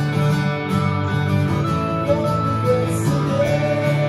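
Live band music of acoustic and electric guitars playing together.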